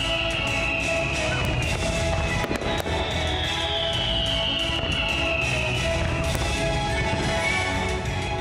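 Fireworks popping and crackling over music.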